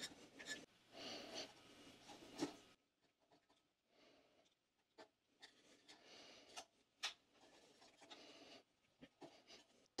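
Near silence with faint scraping and a few small clicks: a flathead screwdriver prying old rubber O-rings out of their grooves on the plastic stem of a pool multiport valve diverter.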